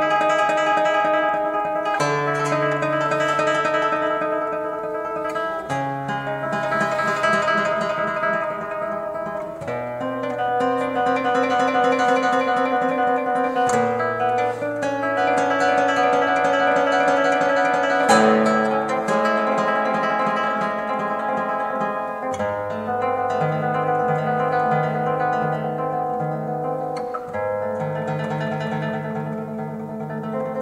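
Solo nylon-string classical guitar playing a passacaglia. A low bass line moves to a new note every few seconds beneath busy, fast-moving figures higher up, and in places the bass note is repeated in quick pulses.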